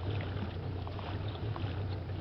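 Small boat's motor running at low speed, a steady low hum, with a light wash of water and wind noise over it.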